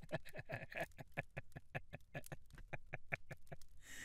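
A man laughing at his own joke: a long run of quick, breathy laughs that trails off near the end.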